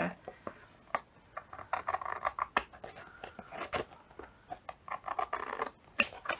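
Scissors trimming the edge of a paper-covered journal cover: a run of irregular snips and paper rustling as the blades work along the glued edge.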